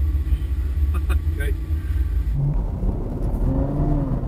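Ferrari FF's V12 engine running with a steady low rumble.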